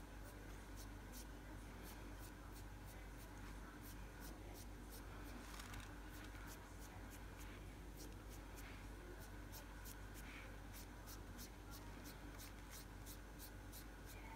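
Faint scratchy rubbing of a sponge-tip applicator working pigment powder onto a fingernail, in quick short strokes about two or three a second, over a low room hum.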